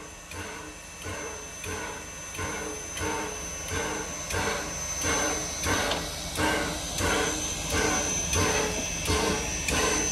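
Sierra Railway No. 3, a 4-6-0 steam locomotive, exhausting in slow, even chuffs of about three beats every two seconds as the train moves off, the chuffs growing louder. A thin, steady high-pitched hiss runs under them.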